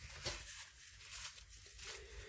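Faint room tone with a few soft rustling or handling sounds.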